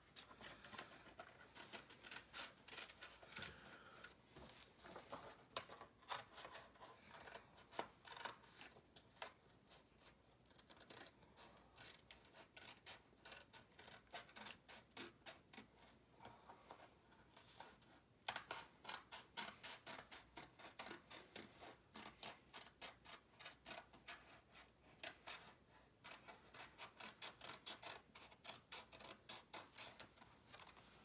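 Scissors snipping through paper in a long run of faint, short snips that come closer together in the second half.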